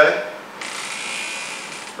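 A man's speech breaks off right at the start. About half a second in, a steady high hiss begins, lasts about a second and a half, and stops just before speech returns.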